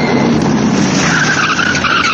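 Sound effect of a car: engine and road noise throughout, with tyres screeching from about a second in, as in a hard skid.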